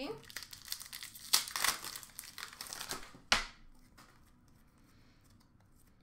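Foil wrapper of a 2020-21 Upper Deck Series 1 hockey card pack crinkling and tearing as it is ripped open, with one sharp click about three seconds in.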